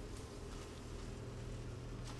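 A faint, steady low hum, growing slightly stronger about a second in.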